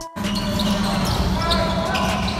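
Basketball game sound from the court: a ball bouncing on the hardwood, with voices echoing in a large hall. It starts suddenly just after the start.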